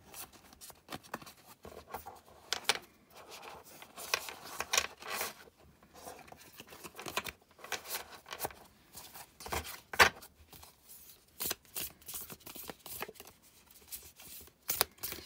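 A deck of matte-finish tarot cards being shuffled by hand, riffled and shuffled overhand, with irregular card snaps and slaps and papery sliding between them. The sharpest snap comes about ten seconds in.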